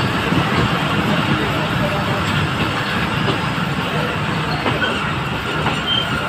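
Passenger train of INKA coaches hauled by an EMD GT42AC diesel locomotive rolling through the station: a steady, loud rumble of wheels on rail, with a faint high wheel squeal near the end.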